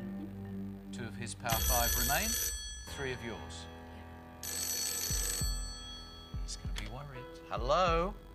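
Telephone ringing twice, about a second each time with a pause of about two seconds between, over steady tense background music. It is the banker's phone calling through to the host with an offer.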